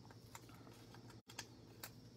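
Near silence with a few faint, light clicks and ticks: small Stampin' Dimensionals foam adhesive pieces being picked off their backing sheet and pressed onto a die-cut cardstock oval.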